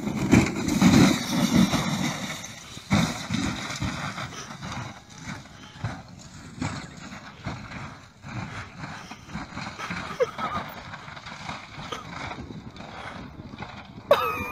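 Wind buffeting a phone microphone, loudest in the first three seconds, with faint scattered knocks from a car tumbling down a steep hillside. A voice is heard now and then.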